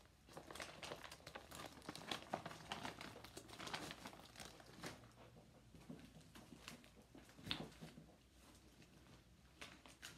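Handling noise from cross-stitch project bags and fabric being rustled and crinkled. It is a dense run of small crackles, busiest in the first few seconds, and it thins out after about eight seconds.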